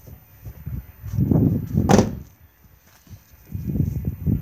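Motorhome driver's door shut with a single sharp thump about two seconds in, after a second of low rumbling on the microphone; another low rumble follows near the end.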